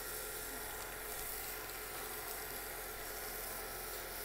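Wet 600-grit abrasive pad rubbing on a CA-glue-finished pen blank spinning on a wood lathe: a steady, soft hiss over the lathe's low running hum.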